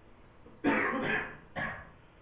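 A person coughing twice: a longer, louder cough, then a short one near the end.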